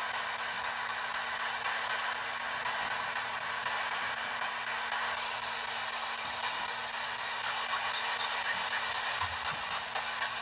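P-SB7 spirit box radio sweeping through stations, giving a steady hiss of radio static with a faint underlying hum.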